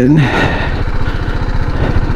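BMW G310GS's single-cylinder engine running steadily at low trail speed, its firing pulses close and even.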